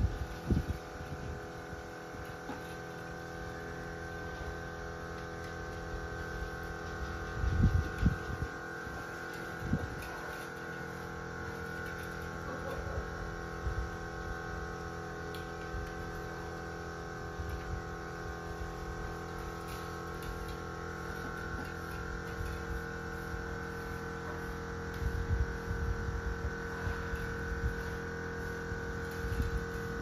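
A steady hum made of several held tones, with a few dull low knocks about eight seconds in, again at ten seconds, and a cluster near the end.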